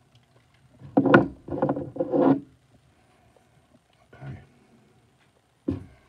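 Packaging handling noise: a black padded sleeve slid off a wristwatch on its plastic display stand, with rustling and scraping. A cluster of three quick bursts comes about a second in, then a smaller one past the middle and a short one near the end.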